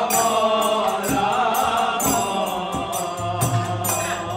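A group of voices singing a Hindu devotional kirtan chant together. They are accompanied by a two-headed barrel drum (mridanga), harmonium and small hand cymbals (kartals), with drum strokes and cymbal clashes sounding through the singing.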